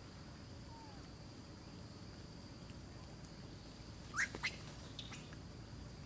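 A few quick, high bird chirps sweeping up in pitch about four seconds in, the loudest sounds here, over a steady high-pitched insect drone.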